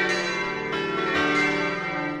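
Bells ringing, several struck one after another with their tones ringing on and overlapping.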